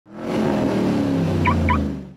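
Logo intro sound effect: a low drone fades in, with two short high chirps about a second and a half in, and it dies away at the end.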